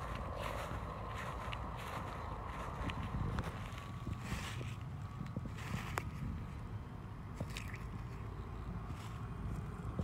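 Footsteps through dry fallen and mulched leaves on grass: soft crunches and rustles now and then, over a low steady background rumble.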